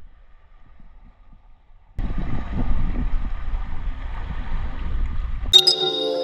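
A loud rushing outdoor noise that cuts in abruptly about two seconds in, heavy in the low end, after faint background hush. Near the end it gives way to ambient music that opens with a bright chime and held tones.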